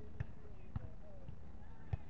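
Volleyball struck by players' hands and forearms during a beach volleyball rally: three sharp slaps, the first two about half a second apart and the last near the end.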